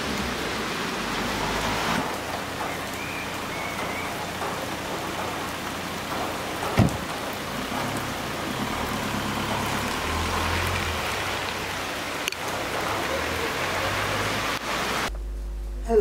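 Steady rain falling on a wet street and pavement, an even hiss with a single knock about seven seconds in. It stops abruptly about a second before the end.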